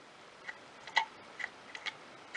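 A handful of faint, irregular clicks as a vintage lever-filling fountain pen is filled from an ink bottle: the lever is worked with the nib under the ink, and air bubbles out of the sac.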